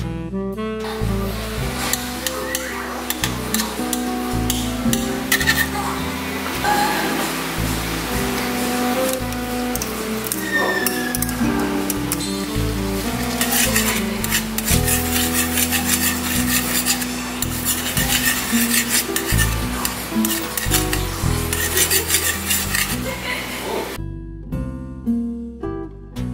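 Butter melting and bubbling in a steel wok, with a metal spoon stirring and scraping against the pan. Background music plays throughout, and the bubbling and scraping stop about two seconds before the end.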